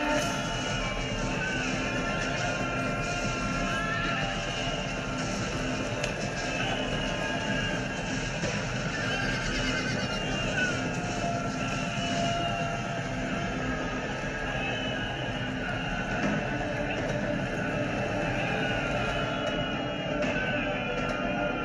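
Film soundtrack of a cavalry charge: many horses galloping, with repeated whinnies, mixed with background music, all at a steady level throughout.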